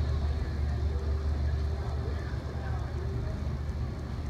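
Open-air crowd ambience: a steady low rumble with faint distant voices.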